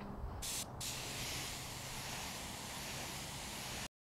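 Compressed-air spray gun spraying automotive primer: a short blast of air about half a second in, then a steady spraying hiss that cuts off suddenly just before the end.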